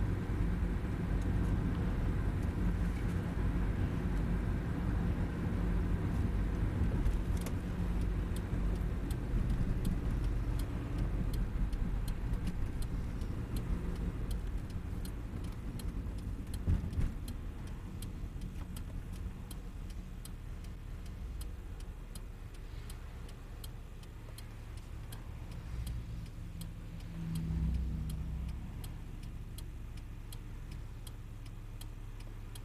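Car interior noise while driving: a steady low rumble from the engine and tyres that eases off about halfway through. From about seven seconds in there is an even, regular ticking.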